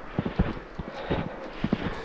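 Footsteps on a trodden snow path, a regular series of soft steps at a walking pace.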